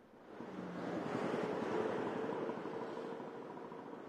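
Road traffic at the reporter's roadside position: a motor vehicle going past, its noise swelling about a second in and then slowly fading.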